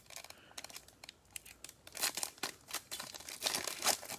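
Foil wrapper of a Panini Select football card pack crinkling and tearing as it is handled and torn open, light at first and denser and louder from about two seconds in.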